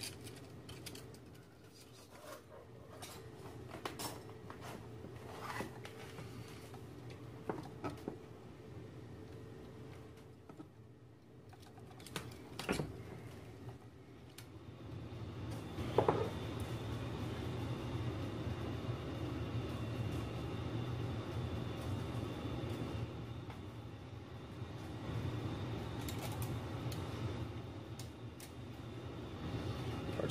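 Scattered small clicks and taps of hand tools and component leads on a tube amp chassis. About halfway through, a steady low rumble with a faint high whine comes up and keeps going: the basement furnace running.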